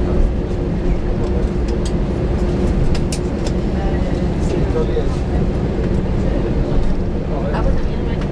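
Steady cabin rumble of a jet airliner taxiing on the ground after landing, with a steady hum, heard from inside the passenger cabin. Faint passenger chatter is mixed in.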